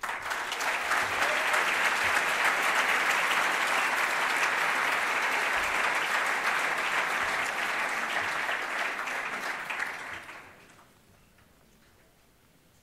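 Audience applauding, a dense steady clapping that begins at once and dies away about ten and a half seconds in.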